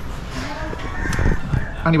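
A rooster crowing in the background among children's voices, with a man saying "anyway" near the end.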